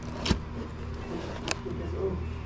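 Two sharp clacks, about a second apart, of hard plastic collectible cases being handled and knocked together in a cardboard box, over a steady low hum.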